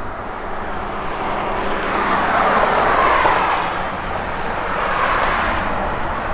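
Passing road traffic: the tyre hiss of cars going by on wet pavement, swelling loudest in the middle and again near the end, over a faint steady low hum.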